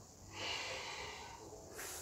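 A person's audible breathing during a yoga movement: one long breath starting about a third of a second in, then a short breath near the end.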